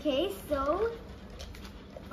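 A girl's wordless voice making two short gliding, up-and-down humming notes in the first second, followed by a few light crackles of paper being handled.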